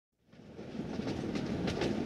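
A rumbling, clattering noise fades in from silence and grows steadily louder, with faint irregular clicks over it.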